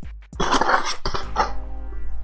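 A man coughing: a rough burst about half a second in and a shorter one just after, over faint background music.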